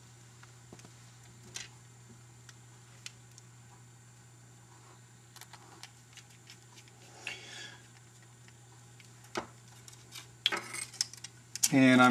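Sparse, faint clicks and taps of small screws and fingers working on a TV remote's circuit board and plastic housing, over a steady low hum.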